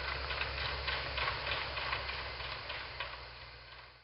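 Outdoor field ambience: a steady hiss with a low rumble and many faint, irregular ticks and clicks, fading out near the end.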